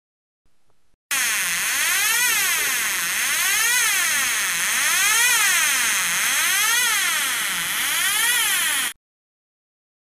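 Homemade transistor siren, a slow multivibrator sweeping the pitch of a second multivibrator that drives a loudspeaker. Its buzzy tone rises and falls smoothly about every second and a half, starting about a second in and cutting off near the end. It does not sound like an air-raid siren, a fault the builder traces to too small a capacitor C1 in the slow multivibrator.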